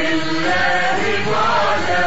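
Arabic song: a sustained, chant-like sung melody line over steady instrumental accompaniment.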